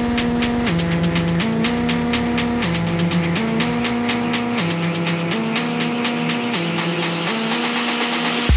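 Electronic dance music from a live DJ mix over a club sound system: a synth riff swinging between two chords about once a second over steady hi-hats. The deep bass drops out about halfway through, leaving the riff and hats, and a hiss builds toward the end.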